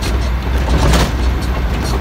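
Steady low rumble of a truck's engine heard inside the cab, with a brief noisy burst about a second in.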